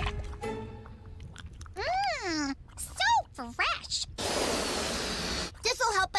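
Cartoon soundtrack: short wordless character voices with sliding, falling pitch, then a hissing noise lasting about a second and a half, over quiet background music.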